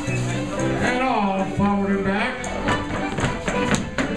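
Live contra dance band playing a fiddle tune: fiddles over guitar and keyboard accompaniment, with voices in the hall and sharp taps in the second half.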